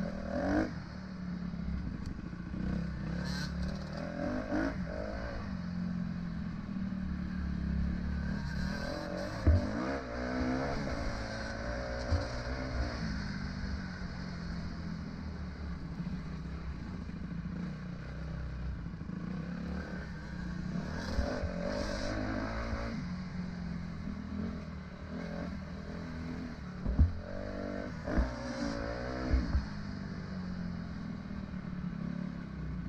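Dirt bike engine running under way, rising and falling in pitch with the throttle in two spells. Sharp knocks from the bike jolting over ruts come about nine seconds in and twice near the end.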